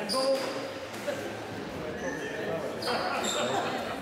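Racketball play on a squash court: a ball thud about a second in, short high squeaks of shoes on the wooden floor, and voices, all echoing in the enclosed court.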